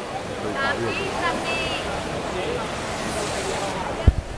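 Indoor swimming pool race noise: a steady wash of swimmers' splashing and spectators' voices, with a few short, high-pitched shouts from the crowd in the first two seconds.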